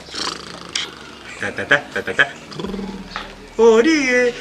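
A man's voice making wordless vocal sounds, ending in a louder rising cry near the end.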